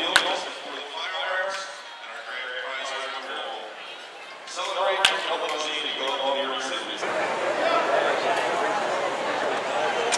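Two sharp cracks of a wooden baseball bat hitting balls in batting practice, about five seconds apart, heard over a public-address announcer's voice. From about seven seconds in, a steady ballpark crowd din takes over.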